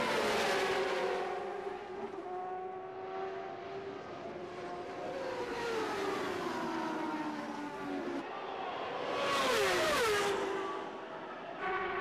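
CART Indy cars' turbocharged V8 engines at racing speed, the cars passing one after another with the engine note falling in pitch as each goes by. The loudest pass comes about nine to ten seconds in.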